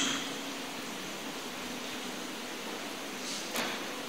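Steady room hiss through the church microphone, with a faint low hum, during a pause in speech. A brief soft high hiss, like a breath, comes about three and a half seconds in.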